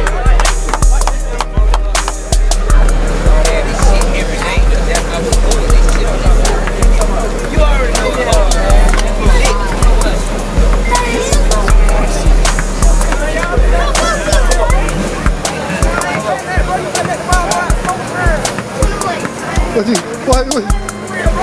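Hip-hop track with a heavy, booming bass beat, crisp hi-hats and vocals over it; the bass hits turn shorter and choppier about three quarters of the way through.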